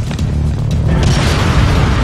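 A single pistol shot about a second in, with a long fading tail, over loud background music with heavy bass.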